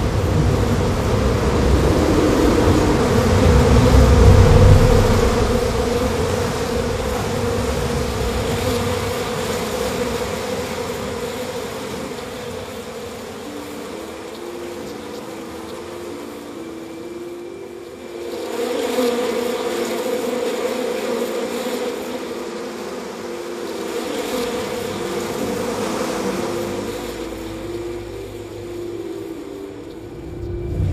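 A steady droning hum, swelling and fading in loudness, with a slow line of held notes stepping up and down over it from about halfway through.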